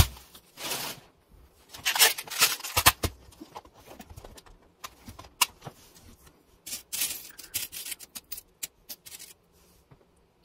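A clear plastic box of small metal charms being handled and opened, the charms clinking and rattling as fingers rummage through them to pick one out: a run of short clicks and scrapes, busiest about two to three seconds in and again around seven seconds.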